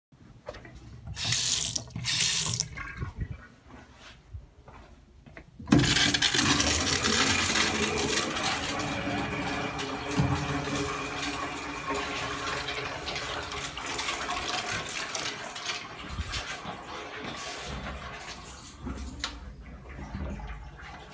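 A sink faucet runs in two short spurts of water. About six seconds in, a urinal flush starts with a sudden rush of water that slowly tapers off over the next dozen seconds.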